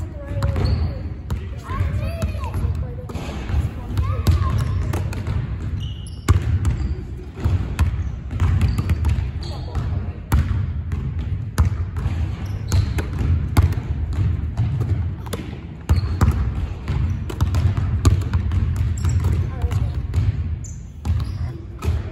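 Basketballs bouncing and being caught on a hardwood gym floor: many irregular thuds over a steady low rumble, with children's voices now and then.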